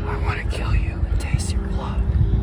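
A person's whispered, breathy voice, in short hissy phrases over a steady low rumble.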